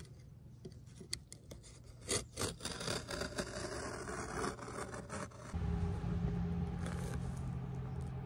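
Utility knife slicing through carpet along a wooden board: a few sharp clicks and then a stretch of scratchy cutting about two seconds in. About five and a half seconds in, a low steady hum joins.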